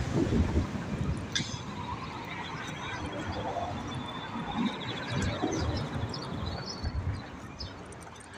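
Street traffic going by, with wind buffeting the phone's microphone while walking. A faint rapid high ticking runs for a few seconds in the middle.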